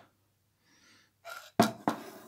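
Props being handled on a tabletop close to the microphone: two sharp knocks about a third of a second apart, followed by a soft rubbing.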